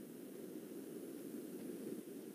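Faint, steady background hiss and hum from an open microphone on a video call, with no speech.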